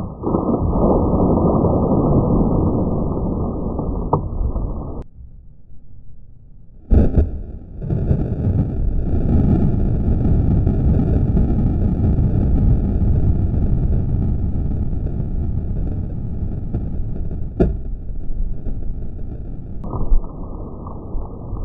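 A sudden loud burst as water blasts up out of gravel, followed by a long, low rushing of the spray. It dies down about five seconds in. A second sharp burst about seven seconds in is followed by more rushing spray to the end.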